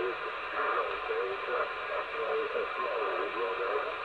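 AnyTone AT-6666 10-metre radio receiving upper sideband: steady receiver hiss through the speaker with a weak, barely readable voice in it as the signal fades.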